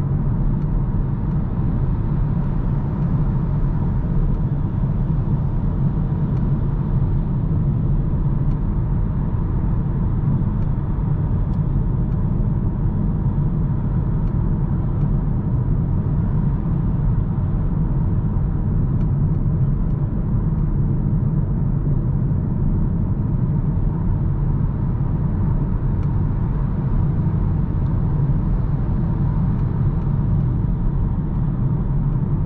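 Steady road and tyre noise inside the cabin of a Hyundai Kona Hybrid cruising at expressway speed: an even low rumble that does not change.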